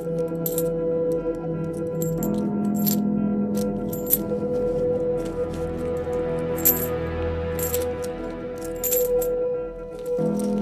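Background music with steady held tones, over which coins drop and clink again and again, about once a second at irregular intervals.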